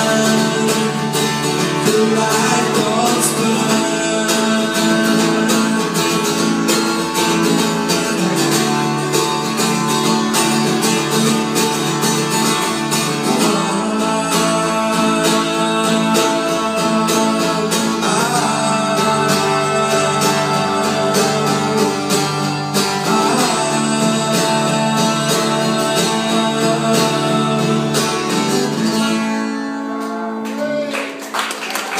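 Live acoustic guitar song played through a PA, with a voice singing over the guitar at times. The music eases off near the end as the song closes.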